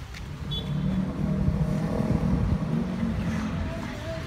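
A motor vehicle's engine running close by, growing louder over the first second, holding, then easing off near the end, as if it passes.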